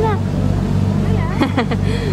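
Passenger ferry's engine running with a steady low hum, with a person's voice briefly about a second and a half in.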